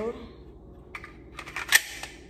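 Hard clicks from a Ruger-57 pistol's mechanism as it is handled: two light clicks, then one sharp, louder clack near the end.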